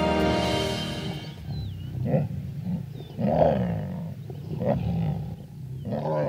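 Lions growling while feeding together on a kill: a run of deep, uneven growls, the loudest about three seconds in, as they compete for their share. Background music fades out during the first second or so.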